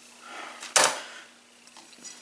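Kitchen handling sounds: soft rustling, then one sharp clack a little under a second in, as the knife is put down and the cooked bacon is picked up off the plate. A faint steady hum runs underneath.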